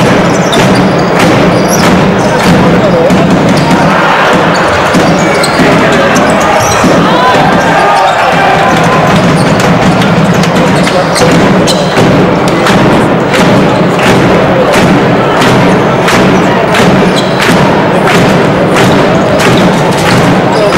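A basketball bouncing repeatedly on a hardwood court during live play, over hall background of voices and arena music.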